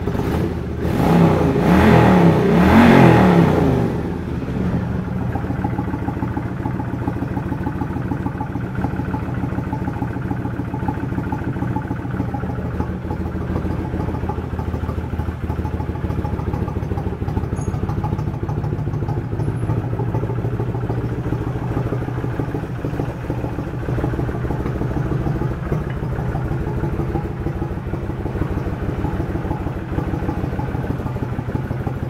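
Kawasaki VN1600 Vulcan's V-twin engine revved briefly by twisting the throttle in the first few seconds, then settling to a steady idle.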